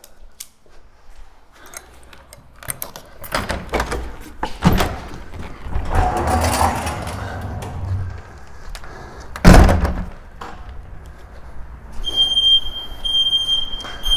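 A door or hatch being opened: clunks and a rattling rumble, with a loud thump about halfway through. Near the end the Stihl RT 5097 ride-on mower's warning buzzer starts beeping in an intermittent high tone, the signal that the ignition is still switched on.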